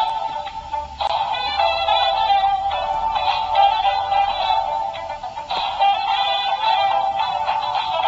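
A dancing sunflower toy with a toy saxophone playing its electronic tune with synthetic-sounding singing through a small, thin-sounding speaker. It breaks off briefly about a second in, then carries on.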